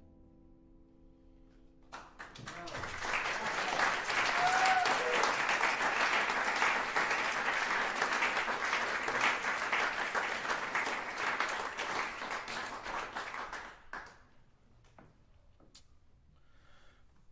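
The last chord of a grand piano dying away, then an audience applauding for about twelve seconds, with one voice briefly calling out about three seconds in.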